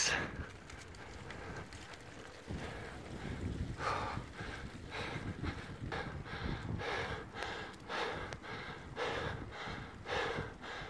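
A cyclist breathing hard and fast under effort on a steep climb, about two breaths a second. Low wind rumble on the microphone underneath.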